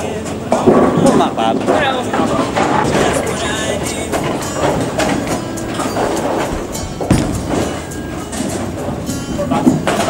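Bowling alley din: background music and people's voices over a steady low rumble of balls rolling down the lanes, with a sharp knock about seven seconds in.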